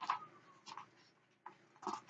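Pages of a paperback book being turned and handled: a few short papery rustles, one near the start, one about two-thirds of a second in and a cluster toward the end.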